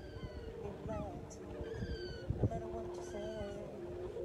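Gulls calling: about five short, wavering mewing calls spread over four seconds.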